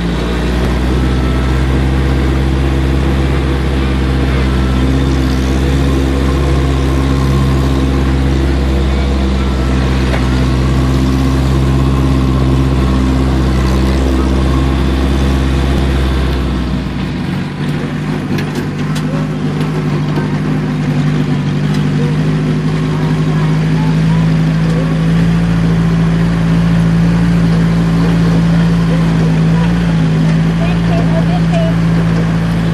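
Jeep engine running steadily while driving up a dirt trail, heard from on board. About halfway through, the deep low rumble drops away and the engine note then rises slowly.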